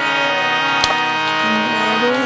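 Harmonium holding sustained chords, with the singing mostly paused, and a single sharp click just before the middle.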